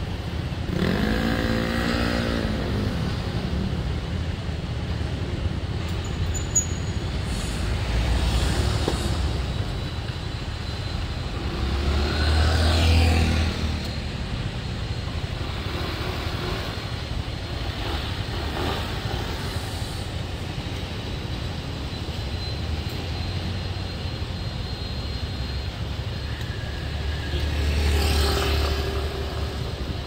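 Street traffic: a steady low rumble of vehicles, with louder passes about a second in, around twelve seconds in and near the end.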